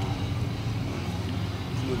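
Steady low hum of outdoor background noise, with faint voices.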